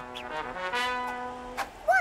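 A short brass music sting of a few held notes, ending about a second and a half in.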